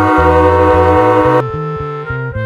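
Children's instrumental background music: a bass line of short notes under a long held, horn-like chord that cuts off about one and a half seconds in.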